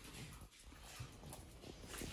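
Faint sounds of an excited dog close by, with a few light clicks such as claws on a tile floor.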